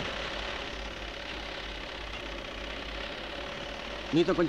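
Sewing machines running together in a workroom: a steady, even mechanical whir with a faint hum and a low rumble.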